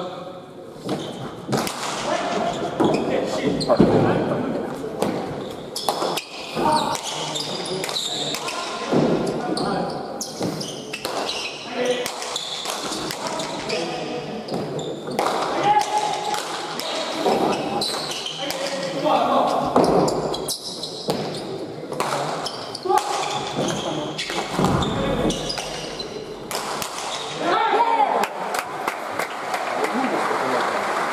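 Basque pelota ball repeatedly striking the walls and floor of an indoor court and being hit back, sharp impacts that echo in the hall, with voices throughout.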